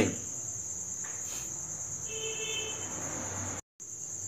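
Steady high-pitched background drone with no speech. A faint, brief tone comes in about two seconds in, and the sound drops out to silence for a moment near the end.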